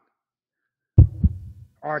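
Heartbeat sound effect: two deep thumps about a quarter of a second apart, about halfway in, trailing off in a short low rumble.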